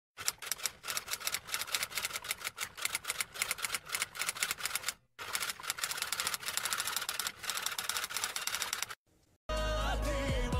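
Typing sound effect: rapid clicking keystrokes in two runs of about five and four seconds with a short break between them. Just before the end, pop music with a singing voice starts abruptly.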